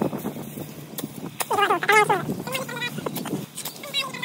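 A few sharp knocks and snaps from a steel digging bar being driven into the soil and roots of a small gelam tree as it is uprooted, with a man's voice in the middle.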